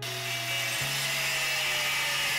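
Angle grinder cutting into steel plate: a steady harsh grinding noise that starts suddenly, with a faint whine slowly falling in pitch as the disc bites in.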